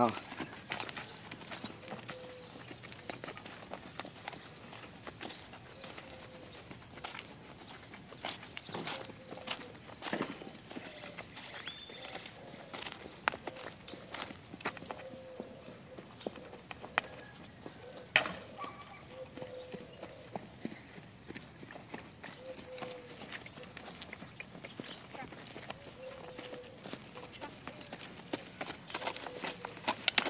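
Hoofbeats of a chestnut Quarter Horse–Tennessee Walker cross gelding on arena sand, a run of irregular soft knocks as it walks and trots.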